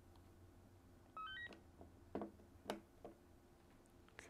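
An AnyTone 878 handheld radio's quick run of rising beeps about a second in, its power-on tones as it is switched back on. A few faint clicks of handling follow.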